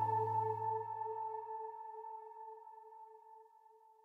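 The last held chord of a slow, sad instrumental string-and-piano piece dying away, fading steadily to silence over about three and a half seconds. The low note goes first.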